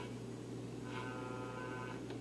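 Motorola Catalin tube AM radio tuned between stations: a low steady hum under faint hiss. A cluster of faint steady tones comes in about a second in as the dial passes a weak signal.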